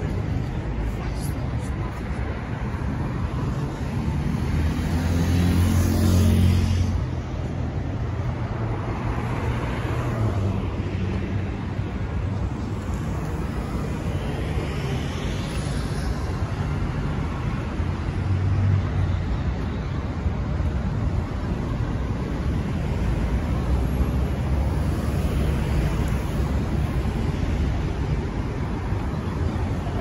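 Road traffic: a steady hum of cars driving past, with a louder vehicle going by about five seconds in and another briefly near nineteen seconds.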